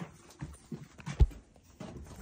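Footsteps knocking on old wooden attic floorboards: a few irregular thuds, with one heavier thump just past a second in.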